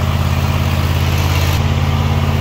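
The Craftsman Z5400 zero-turn mower's 22-horsepower Kohler engine running steadily.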